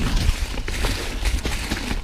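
Santa Cruz Hightower LT mountain bike rolling fast over a rough, leaf-covered trail: tyres crackling through dry leaves and over rocks, with a steady run of small clicks and rattles from the bike. A low rumble of wind buffets the microphone throughout.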